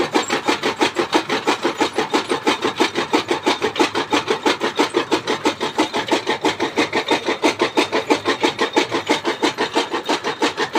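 Fodder chaff cutter with a large flywheel chopping green fodder being fed into it, making a fast, even rhythm of rasping cuts.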